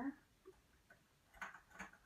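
Two faint metallic clicks about half a second apart, from a transfer tool touching the metal needles of a flatbed knitting machine as stitches are taken off for a twist.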